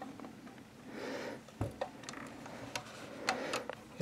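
Handling noises as an AR-18-type rifle is turned over and laid on carpet: a brief rustle, one soft thump about a second and a half in, and a few light, sharp clicks of its metal parts and sling hardware.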